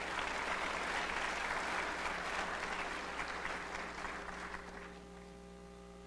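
Audience applauding at the end of a talk, dying away about five seconds in, over a steady low mains hum.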